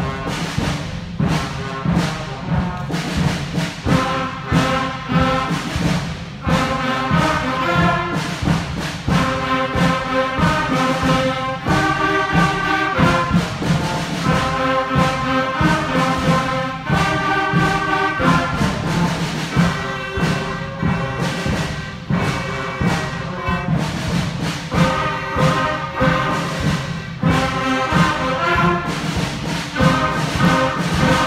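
Sixth-grade concert band playing: brass, woodwinds and percussion together, with a steady beat and a strong bass line.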